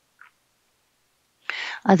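Near silence on a video-call line, then a short breathy hiss and a man's voice starting to speak near the end.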